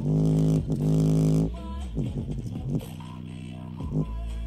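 Bass-boosted music played loud through a small portable Bluetooth speaker as a bass test, its passive radiator pumping on the deep notes. Two long, heavy bass notes fill the first second and a half, followed by sliding bass notes that grow quieter.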